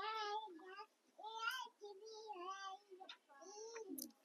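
A faint, high-pitched voice in the background, heard in four short phrases with the pitch rising and falling.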